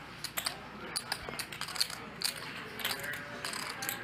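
Light, irregular clicking of poker chips being handled at the table, over low room noise.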